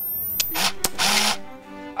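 Camera shutter clicks as a selfie is taken, then a short whoosh and a held steady tone: an edited transition effect.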